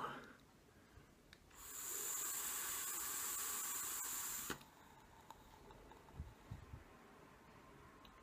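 Fogger V4 dual-coil rebuildable atomizer firing during a draw: a steady hiss of about three seconds that starts about a second and a half in and cuts off sharply.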